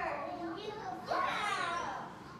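A young child's voice talking without clear words, in two short stretches, the second starting about a second in.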